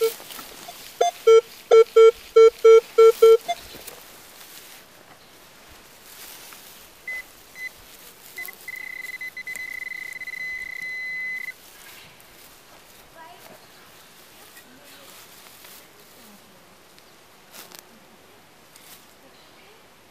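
A metal detector's target signal: about seven short, low beeps in quick succession, a second or so in. Later a handheld pinpointer, tagged as a Garrett Pro-Pointer, gives a few short chirps and then a steady high-pitched tone for about three seconds before cutting off, as it is held in the hole on a shallow target that turns out to be a pull tab.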